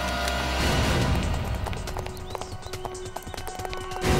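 Dramatic background score with held tones and a low swell about half a second in, punctuated by short, sharp percussive hits.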